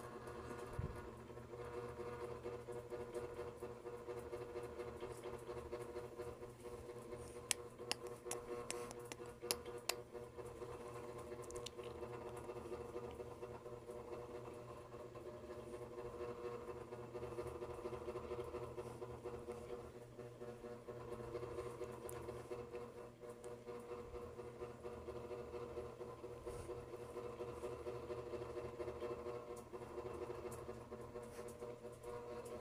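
A faint, steady mechanical hum that holds one pitch throughout, with a few faint clicks a little under ten seconds in.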